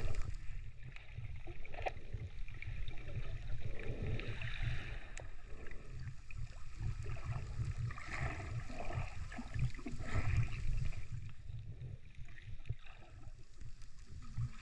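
Water sloshing and churning around a camera held just under the surface: a muffled, fluctuating low rumble with some gurgling.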